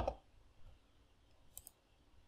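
A short cluster of faint computer clicks about one and a half seconds in, as a browser page is refreshed.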